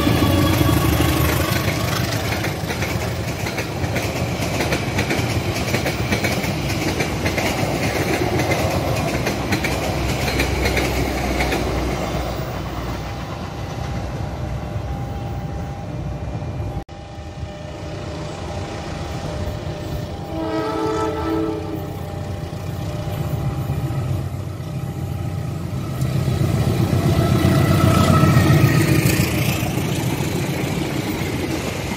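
Passenger train hauled by a CC201 diesel-electric locomotive passing close by, its wheels rumbling and clattering over the rails, the sound tapering off and then breaking off abruptly. About twenty seconds in, a locomotive horn sounds one steady chord for about a second and a half, and a few seconds later another diesel-hauled train approaches, its rumble growing loud near the end.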